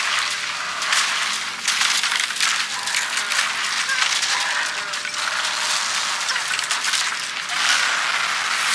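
Film trailer sound design: dense rustling and crackling noise of a body scraping through undergrowth, over a faint low music drone.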